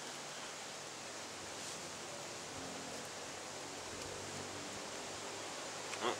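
Steady, even background hiss of outdoor ambience, with no distinct sounds standing out.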